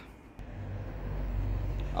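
Citroen Dispatch diesel van engine idling with a low, steady hum; it becomes louder with a small click about half a second in.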